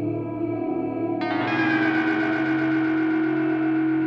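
Electronic music playing back from an Ableton Live session: sustained pitched tones over a steady low note, with a brighter layer coming in a little over a second in and a slowly falling tone running through it.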